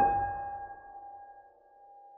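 A loud musical note or chord struck once on a piano-like keyboard instrument, with a deep low end, ringing on and fading over about a second and a half into a faint held tone: a dramatic sting in a film score.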